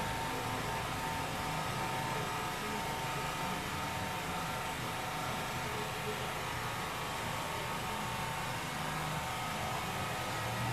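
Steady indoor room noise: an even hiss with a constant thin tone and a faint low murmur underneath, with no distinct event.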